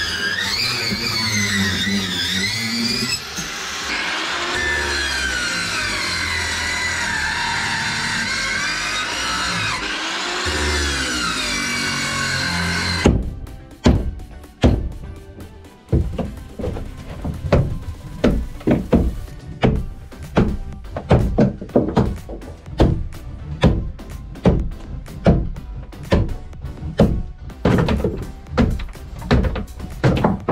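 Background music for about the first 13 seconds. It stops, and a run of hard knocks follows, roughly one or two a second: a steel crowbar being driven into and prying at the solid wooden engine bed and stringers of a fibreglass boat hull.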